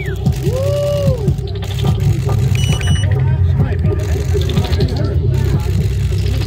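Noisy press crowd: overlapping voices and calls, some rising and falling in pitch, over a steady low rumble, with a short high electronic beep about two and a half seconds in.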